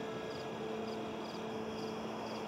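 A cricket chirping steadily, about two short high chirps a second, each a quick triple pulse, over a faint held low note.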